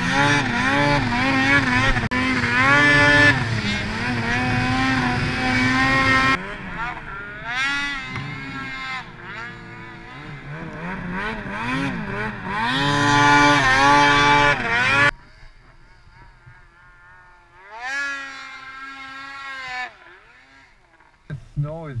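Two-stroke snowmobile engine revving up and down under throttle, its pitch rising and falling over and over. It is loud at first, eases off about six seconds in, and is loud again for a few seconds past the middle. Then it drops away suddenly, with one more short rev near the end.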